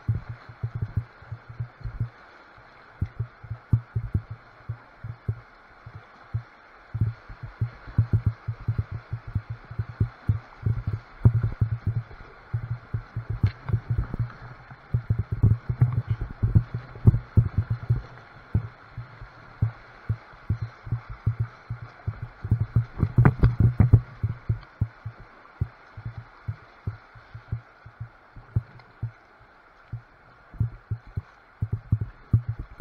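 Kayak running river rapids, heard muffled through an action camera's waterproof housing: a steady rush of white water with irregular clusters of low thuds and knocks from water and paddle strokes buffeting the boat and camera. A quieter stretch comes a few seconds in and again in the last few seconds.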